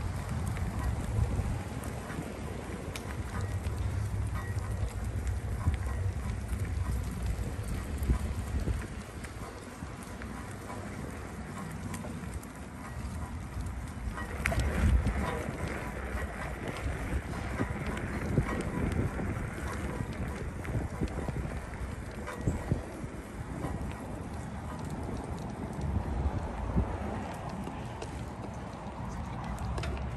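Wind buffeting the microphone of a camera carried on a moving bicycle, with the rumble of the tyres on a paved path; a sharper knock comes about halfway through.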